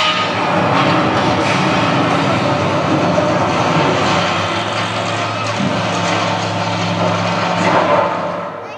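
Loud soundtrack of a projection-mapping show playing over outdoor loudspeakers: music mixed with machine-like sound effects. It cuts in suddenly at the start, and a steady low hum settles in about halfway through.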